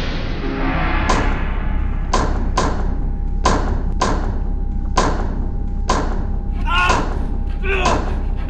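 Heavy thuds of a man kicking and battering the bars of a wooden-slatted cage, about seven irregular blows, then strained shouts near the end.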